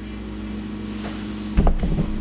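Steady low room hum made of a few fixed tones, with a brief low thump about a second and a half in.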